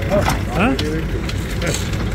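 Brief, indistinct voices over a steady low engine rumble.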